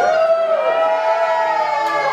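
Music with long held notes that glide slowly up and down in pitch.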